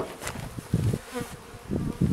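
Honeybees buzzing around a just-closed hive, one bee passing close with a brief wavering hum about a second in, over a few soft low bumps.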